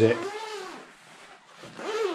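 A man speaking, with a short quieter gap a little under a second in before his voice comes back near the end.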